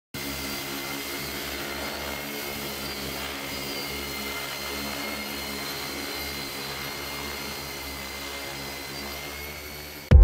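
Six-rotor agricultural spray drone's propellers running in flight: a steady hum with several held tones, easing off slightly near the end.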